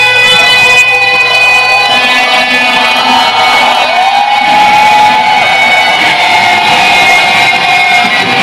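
Heavy metal band playing live, led by an electric guitar. About halfway through, a guitar note bends up and is held.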